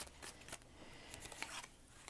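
Tarot cards being handled and drawn from the deck: a few faint, short card snaps and a soft rustle of card stock.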